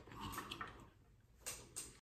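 Faint handling noise from plastic trail-camera gear: a soft rustle in the first second, then two light clicks near the end as the devices are set down.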